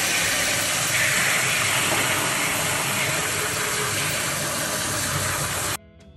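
Kitchen faucet spraying water onto a plastic tray of small toy figures in a stainless steel sink, a steady hiss that cuts off suddenly near the end.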